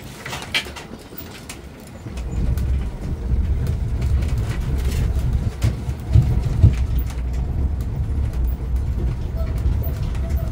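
Low, steady rumble of an open-sided tourist road train on the move, rising about two seconds in, with indistinct voices near the start.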